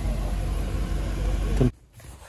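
Car cabin noise: a steady low engine and road rumble heard from inside a moving car, cutting off suddenly near the end into quiet room tone.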